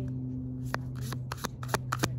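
A tarot deck being shuffled by hand: a quick run of sharp card snaps and clicks beginning a little under a second in.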